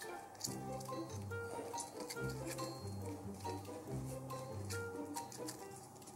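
Soft background music of slow, held notes, with faint scattered clicks from small plastic model parts and wires being handled.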